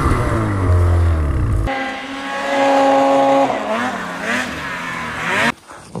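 Ski-Doo Freeride 154 Turbo snowmobile's two-stroke engine running under way, a deep drone that cuts off abruptly a little under two seconds in. After it comes a higher, steadier engine tone that wavers up and down in pitch.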